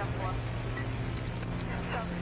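A steady low hum with brief, unintelligible voice-like fragments over it and a few sharp clicks near the end.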